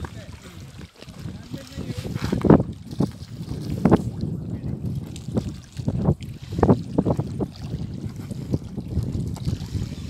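Small waves lapping and splashing against a stony lakeshore in irregular slaps, with wind rumbling on the microphone.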